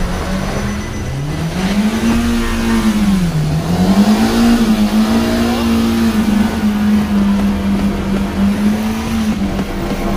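Kia sedan's engine revved hard while stuck in mud, its front wheel spinning in the mud. The engine note dips and climbs back up twice in the first few seconds as the throttle is eased and pressed again, then holds steady at high revs.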